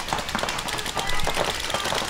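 Paintball markers firing in rapid streams of sharp pops across the field, over a wash of outdoor field noise.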